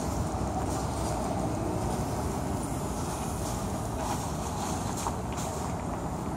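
Steady low vehicle rumble with no distinct events.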